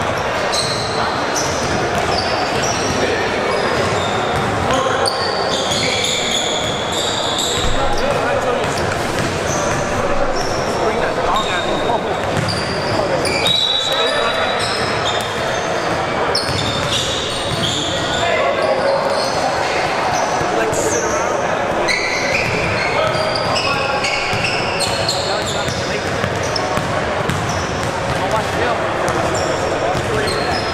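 Basketball game sounds in a large, echoing gym: a ball bouncing on the hardwood court, mixed with players' and spectators' voices and scattered short high squeaks throughout.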